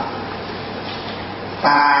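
Steady background hiss with a low hum during a short pause in a man's talk; his voice comes back near the end.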